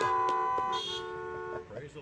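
Several car horns honking together in overlapping steady notes of different pitches, most cutting off about a second and a half in: the drive-in congregation's applause after a song.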